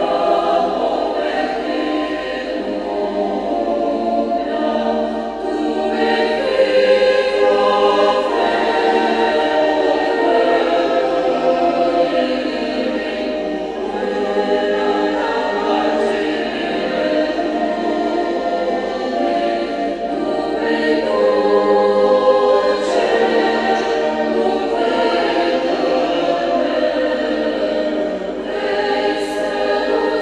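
Large church choir singing a hymn in several parts, with long held chords.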